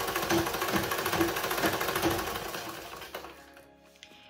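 Treadle-driven sewing machine running fast, its needle bar and mechanism clattering rapidly, then slowing and coming to a stop near the end.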